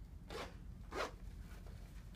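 A waterproof zipper on a Cordura motorcycle pant's zip-off vent panel being pulled closed in two short strokes about half a second apart, as the panel is zipped back onto the leg.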